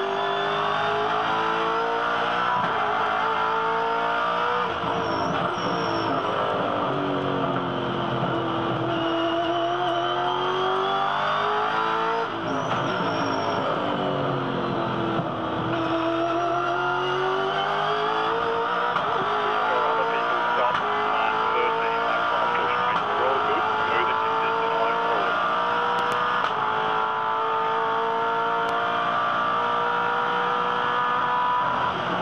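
Race car's V8 engine at racing speed, heard from inside the cabin: its note falls away several times under braking and downshifts for corners, then climbs through the gears to high revs on the straight near the end. The car is a 2011 Holden VE Commodore V8 Supercar with a 5.0-litre V8.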